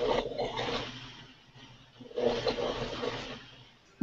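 Two rasping, gurgling bursts of noise, each over a second long, coming through a video-call participant's microphone. The sound is like someone cutting something, or like heavy phlegm.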